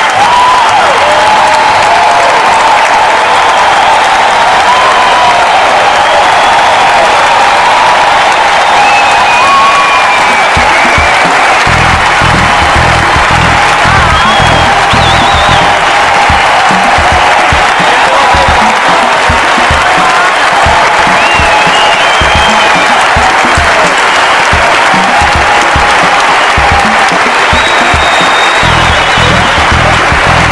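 Loud, steady applause and cheering from an arena crowd, mixed with music; a low bass beat comes in about twelve seconds in.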